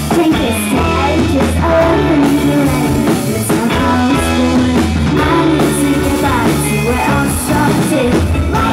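Live rock band playing a song: a woman singing over electric guitar and drums, with cymbal hits at a steady beat.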